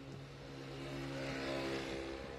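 A car passing close by, heard from inside another car: its engine hum and road noise swell to a peak near the end, then begin to fade.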